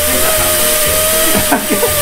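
Hand-held air sander grinding the rim of a motorcycle wheel as the wheel turns on a wheel-grinding machine: a steady whine over a constant hiss and a low hum.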